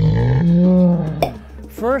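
A bear's deep, rough roar that rises in pitch partway through and ends about a second in.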